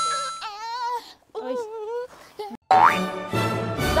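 Edited-in variety-show sound effects and music: a bright held tone at the start, wavering voice-like phrases, a quick rising boing about three seconds in, then background music with a bass line.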